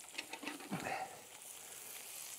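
A fork tapping and scraping in a frying pan as chanterelles are pushed to one side, with a few light clicks in the first half second.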